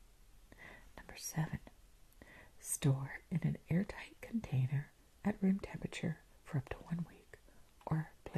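A woman's soft-spoken, near-whispered speech.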